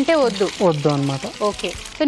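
People talking in a studio kitchen, with a faint hiss of food frying in a pan underneath.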